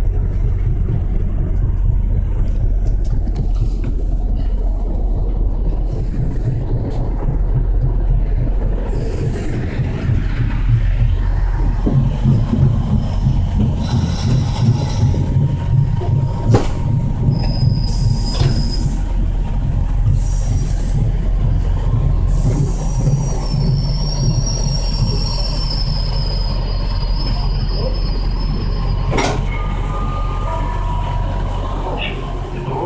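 MBTA commuter rail coach heard from inside while moving: a steady low rumble of wheels on rail, with a few sharp clunks. In the second half a thin, high, wavering squeal from the wheels or brakes comes in as the train slows into the station.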